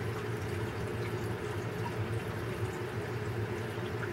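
A steady low hum with an even hiss underneath, unchanging and without distinct clicks or knocks.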